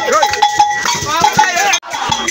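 A group of men chanting and singing a jama song together, over rhythmic hand percussion with a ringing, bell-like strike. The sound cuts out for an instant near the end.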